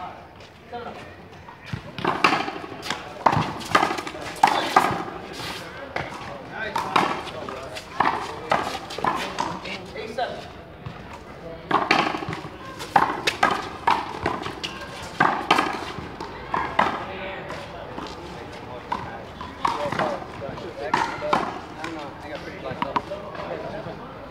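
A small rubber ball being hit by hand against a concrete wall and bouncing on the court during a rally, as sharp smacks at irregular intervals. Players' voices run underneath.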